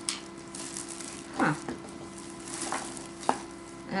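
Small handling sounds of a little battery-powered light being turned over in the hands: a sharp click at the start and another near the end, with a soft rustle between, over a steady low hum and hiss.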